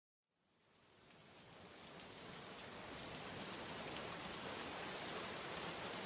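Steady rain ambience, an even patter and hiss that fades in from silence over the first couple of seconds and then holds steady at a low level.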